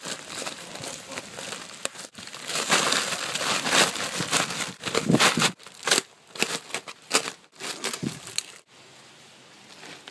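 Clear plastic feed sack crinkling and rustling as hands work at its string-stitched top and pull it open. The crinkling is dense for about the first five seconds, then comes in separate crackles and dies down about a second before the end.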